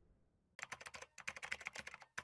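Computer keyboard typing sound effect, a quick run of faint key clicks starting about half a second in.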